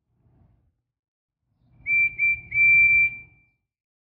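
Steam engine whistle: two short toots and then a longer one on one high note, each starting with a slight upward scoop, over a low rumble.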